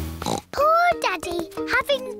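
Cartoon pig character voices with oinking snorts, over light background music with steady held notes.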